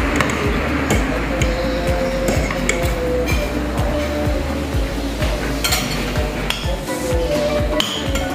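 Metal spoon and fork clinking and scraping on a ceramic plate as goat satay is pushed off bamboo skewers, with background music.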